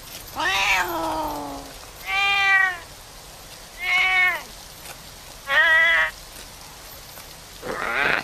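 Cartoon cat meowing: a series of drawn-out meows about every one and a half seconds, the first sliding down in pitch, the next three rising and falling, then a shorter call near the end.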